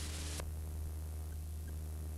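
Steady low electrical hum with a layer of hiss on the recording. The hiss cuts off suddenly with a faint click about half a second in, leaving the hum alone.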